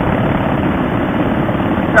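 Steady wind rush on a helmet-mounted camera's microphone over the running V-twin engine of a Harley-Davidson Softail Fat Boy at road speed.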